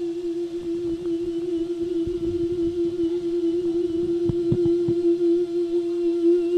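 A monk's voice holding one long sung note with a slight waver, the drawn-out melismatic style of a Thai lae sermon, growing a little louder. A few soft knocks sound about four to five seconds in.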